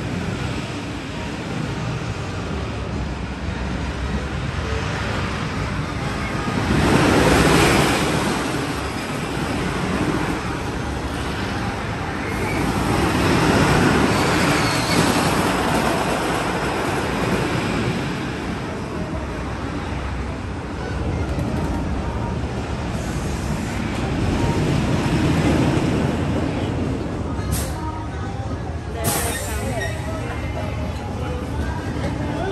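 Wooden roller coaster train rumbling along its wooden track, swelling and fading as the cars pass, loudest about seven seconds in. Two sharp clicks near the end.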